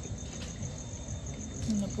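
An insect trilling steadily: a high-pitched chirp in rapid, even pulses, over a low background hum.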